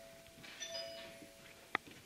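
An electronic chime holding a steady tone for nearly two seconds, with a brighter second note joining about half a second in, then a sharp click near the end.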